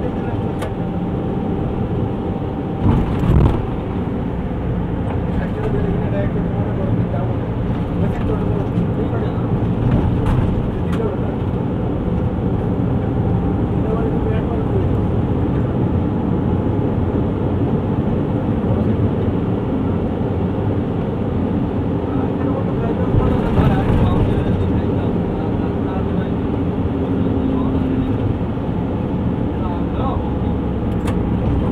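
Steady engine and road noise inside a vehicle's cabin while driving in city traffic, with two short louder bumps, about three seconds in and again later on.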